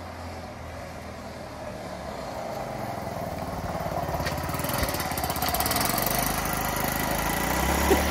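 Honda C90's small single-cylinder four-stroke engine running, growing steadily louder as the step-through approaches and pulls up close.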